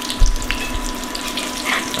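Corn fritters frying in hot oil in a cast-iron skillet, a steady sizzle with small crackles as they are turned over, and a low thump about a quarter second in.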